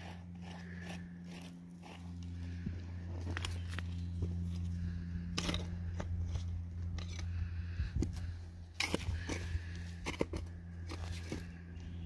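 Rock samples being handled in gloved hands: scattered clicks and scrapes of rock on rock and on gravel, a little louder around the middle and past two-thirds of the way in. Underneath runs a steady low hum.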